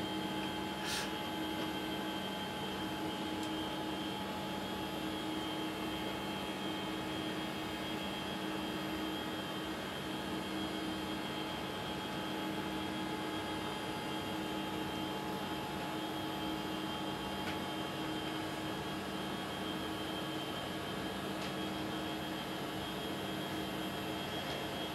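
Steady hum and hiss of the International Space Station's cabin ventilation fans and equipment, with several constant tones over an even rushing noise.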